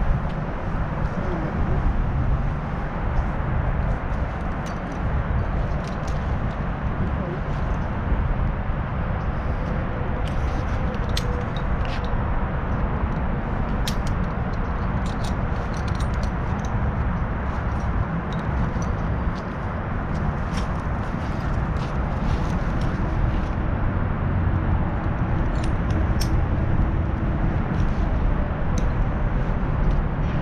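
Steady low rumbling noise on the microphone, with scattered light metallic clicks and clinks of a climber's rope-rescue hardware (carabiners, descent device) as he lowers a rescue dummy and handles his rigging.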